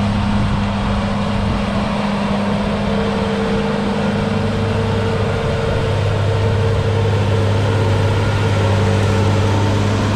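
Versatile 936 four-wheel-drive tractor's Cummins 14-litre six-cylinder diesel running steadily under load while pulling a seven-bottom moldboard plow, with a higher steady tone joining about three seconds in and a slight rise in loudness as it comes close.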